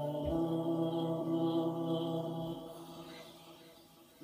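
Recorded chanted vocal music: one long, steady low note held and then fading away over the last second and a half.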